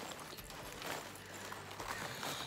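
Faint rustling of fabric ribbon being handled, with a few light knocks against the countertop.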